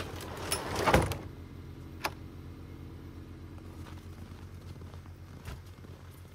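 Overhead garage door pulled down by hand, rattling along its tracks and shutting with a bang about a second in, followed by a sharp click, over a steady low hum.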